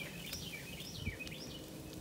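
Faint bird chirps: a handful of short, quick rising-and-falling notes in the first second or so, over quiet outdoor background noise.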